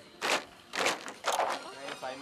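Bamboo poles of a bamboo-pole dance (múa sạp) clacking together in a steady rhythm, about two strikes a second, with voices between the strikes.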